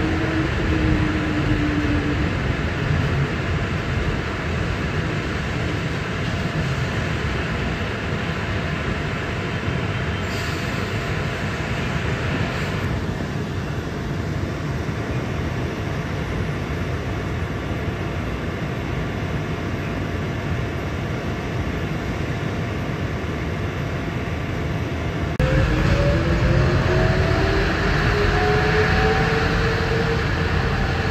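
Interior ride noise of a 2006 New Flyer city bus on a wet road: steady rumble and hiss, with a falling tone fading out just after the start as it slows. About 25 seconds in the sound gets louder and a rising whine climbs as the bus accelerates.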